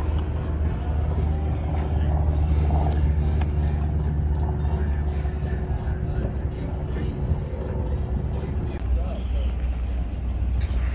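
A motor vehicle engine running steadily with a low rumble, over background voices. A faint steady hum drops away about eight seconds in.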